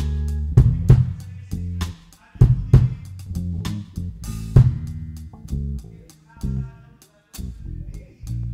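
Live blues band playing a stop-and-start groove on electric bass and drum kit, with some electric guitar. The band drops out briefly about two seconds in and again near the end.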